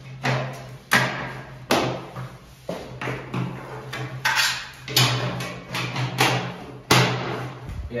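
Sharp knocks and clicks, about half a dozen, with scraping between them, as glazing clips are pushed and tapped into the frame of a glass bathroom door to hold the glass. A steady low hum runs underneath.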